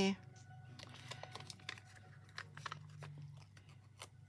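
Light crinkling and small, scattered clicks of paper and backing sheet as foam adhesive dimensionals are peeled off their sheet and pressed onto a paper tag.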